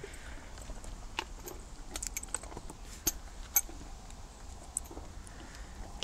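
Light metallic clinks of a loose-ring snaffle bit and bridle fittings: a scattering of short, sharp ticks as the bit and cheek pieces are handled on the horse's head.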